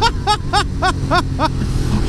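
A man laughing in a quick run of "ha"s, about three or four a second, over wind rush and the steady drone of the motorcycle he is riding.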